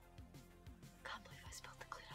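Near silence: faint room tone with a few soft, brief rustles and small clicks.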